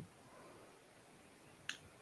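Near silence: room tone, with a single short click near the end.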